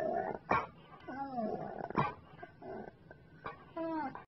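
A dog vocalizing: a string of short pitched cries whose pitch bends up and down, with a few sharp clicks between them.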